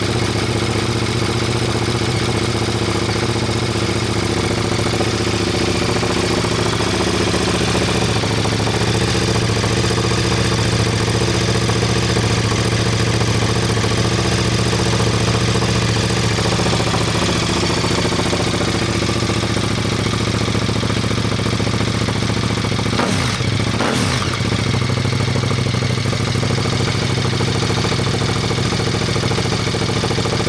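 KTM 1290 Super Duke R's 1301 cc V-twin idling steadily through an Akrapovic Evo exhaust with the baffle fitted.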